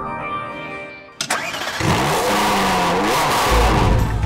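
Soft synth music fades, then a sharp click about a second in and a car engine sound effect starts and revs, rising and falling in pitch. A bass-heavy music beat comes in near the end.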